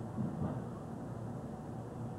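Steady low hum and rumble of outdoor ambience, with faint distant voices.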